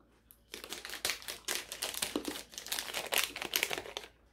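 Close, irregular crackling and crinkling of chocolate-coated foam bananas (Schokobananen) being bitten and chewed, starting about half a second in.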